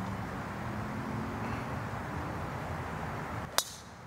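A driver striking a golf ball off the tee: one sharp metallic click about three and a half seconds in, over steady outdoor background noise.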